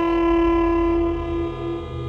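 Alto saxophone holding one long steady note, softening slightly near the end.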